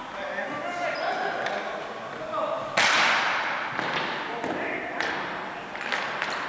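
Ball hockey sticks and ball knocking on a hardwood gym floor, with players' shouts, all echoing in the hall. A loud sharp impact comes about three seconds in and rings on, followed by a few lighter knocks.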